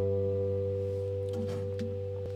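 D'Angelico Premier SS semi-hollowbody electric guitar, played fingerstyle, letting a closing chord ring out and slowly fade.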